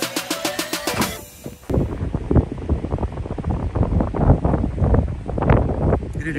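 Background music with a drum beat fades out about a second in, then wind buffets the microphone in irregular gusts, super windy.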